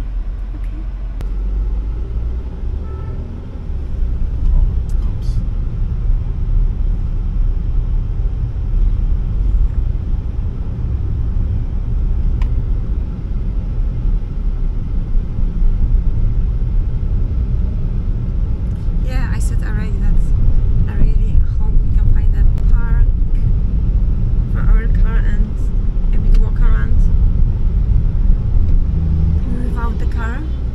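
Steady low rumble of a car on the move, heard from inside the cabin, with voices coming in over it in the second half.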